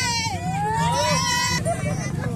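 Procession band music: drums beating a steady pulse under a high melody line that dips and then rises in pitch.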